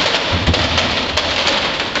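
Large wooden treadwheel turning under a man walking inside it, winding the hoisting rope onto its wooden drum: a continuous rumble and clatter of timber with many small knocks, heaviest about half a second in.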